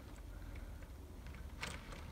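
Faint handling noise as a Hornby Mk3 OO-gauge model coach is pushed slowly along the track by hand, with a single light click near the end.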